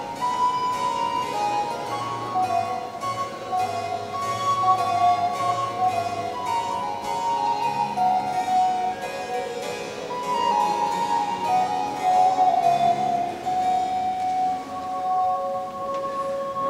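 Baroque transverse flute (traverso) playing a melody of held notes over a plucked harpsichord accompaniment. The flute settles into long sustained notes near the end.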